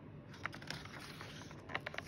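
Faint handling of a hardcover picture book as a page is turned by hand: soft paper rustles and a few light clicks about half a second in and again near the end.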